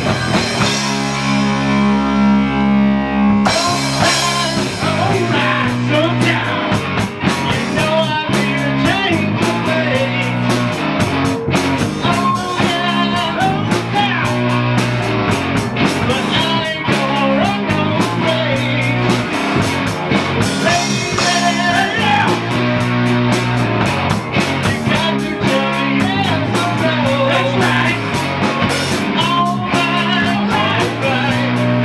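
Live rock band playing: electric guitars, bass guitar and drum kit. The band holds a chord without cymbals for the first few seconds, then the drums come back in about three and a half seconds in and the full band plays on.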